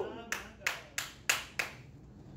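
Five sharp hand claps, evenly spaced at about three a second.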